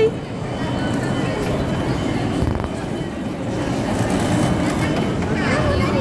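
Steady low din of background voices in a busy indoor space, mixed with the running of a small electric kiddie-ride train circling its track; a child's short voice is heard near the end.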